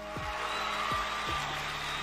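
Background music with a steady kick-drum beat and sustained notes, with a rushing hiss that comes in at the start and carries on under it.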